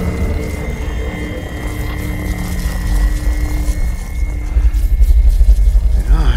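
Film sound design of energy surging through Iron Man's gauntlet holding the Infinity Stones: a deep rumble that grows louder in the last second or so, under a thin steady high tone and quiet music.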